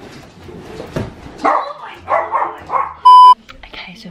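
A dog barking in a few quick bursts over rustling and scuffling on a leather sofa, then a short, loud electronic beep tone just after three seconds in.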